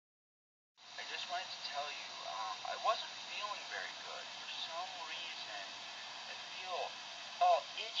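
Speech played through a computer's speaker on a video call, starting about a second in.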